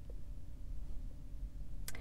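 Low, steady background rumble inside a car's cabin, with a brief sharp click near the end.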